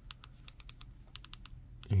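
Buttons on a streaming-box remote control pressed in quick succession, a run of small clicks at about four or five a second as the menu selection is stepped along.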